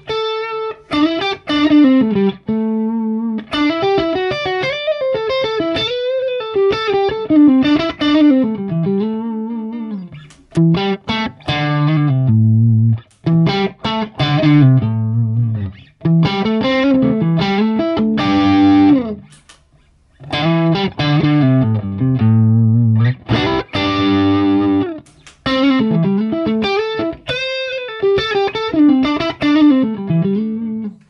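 Strat-style electric guitar played through a Fractal Axe-FX III amp model with FullRes (1.3-second) cab impulse responses that carry room sound: melodic single-note lines with bent notes and some chords, in phrases with a few short pauses between them.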